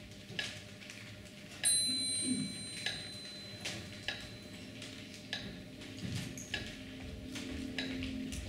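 Clock ticking played as a stage sound effect, a tick about every second and a quarter, with a single ringing chime about one and a half seconds in that fades over a couple of seconds; a low steady music tone comes in during the second half.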